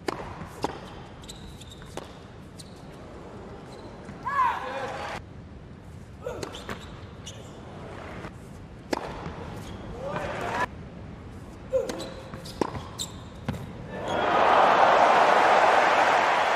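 Tennis ball struck by rackets and bouncing during a rally on an indoor hard court, sharp pops with short sneaker squeaks between them. About two seconds before the end, crowd applause rises and becomes the loudest sound.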